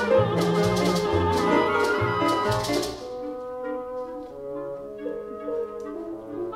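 Orchestra playing with brass to the fore in a contemporary opera score. A loud passage with repeated sharp accents lasts about three seconds, then the music drops to quieter held chords.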